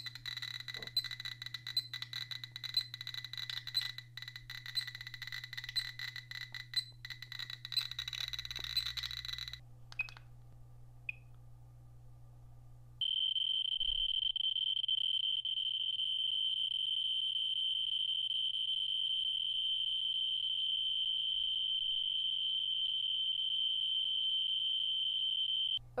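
Radiation detectors responding to a uranium ore sample. Rapid irregular clicking runs for the first nine seconds or so, then after a short lull with a couple of brief beeps, a loud, steady high-pitched tone starts suddenly about halfway through and stays level.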